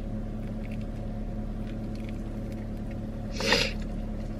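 Chewing and biting on crisp bacon, with faint crunches, over the steady low hum of a car idling. A short, louder sound comes near the end.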